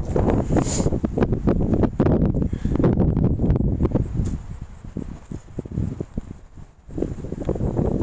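Wind buffeting the camera's microphone in gusts. It eases off for a couple of seconds past the middle and picks up again near the end.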